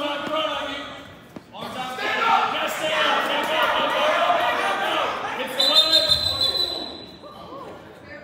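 Coaches and spectators shouting during a wrestling bout, echoing in a gym, with a single thud about a second and a half in and a brief high tone near the six-second mark.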